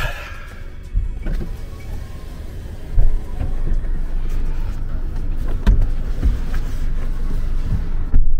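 Inside a taxi cab: a steady low engine and cabin rumble with a few knocks and thumps, and music playing faintly from the car radio.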